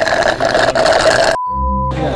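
A busy mix of sound that stops abruptly about one and a half seconds in, replaced by a low steady hum with a thin, high steady tone over it.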